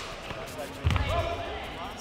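A single dull, heavy thud about a second in during a close-range kickboxing exchange on a foam mat, followed by voices calling out.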